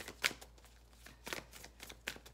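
A large deck of tarot cards being handled: a few short flicks and taps of cards, spread unevenly.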